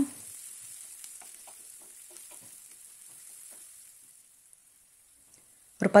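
Sliced onions frying in oil in a pan, a faint sizzle with light scrapes and clicks of a wooden spatula stirring them. The stirring stops after about four seconds and the sound fades almost to silence.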